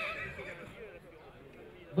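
A horse whinnying, its call wavering and fading away within the first second, followed by a quiet stretch.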